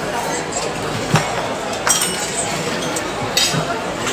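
Tableware clinking three times, sharp and ringing, over a steady murmur of diners' talk in a restaurant dining room.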